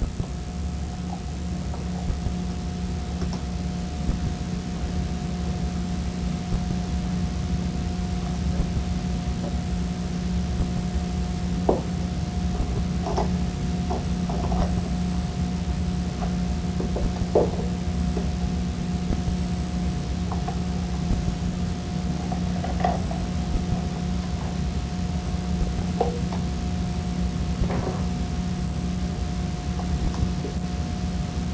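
Steady low background hum with a faint higher tone held throughout, and a handful of light clicks and taps as small metal motor-brush parts are fitted by hand.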